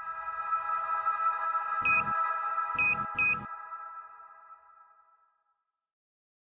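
Electronic logo sting: a held synthesized chord that rings and slowly fades away over about five seconds, with three short pings near the middle.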